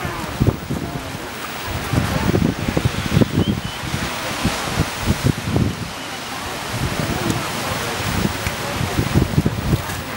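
Wind gusting on the microphone in irregular low rumbles over the wash of the sea, with people's voices faintly in the background.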